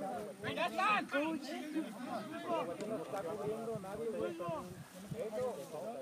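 Several voices calling and talking over one another, many of them high-pitched, like young players shouting on a field.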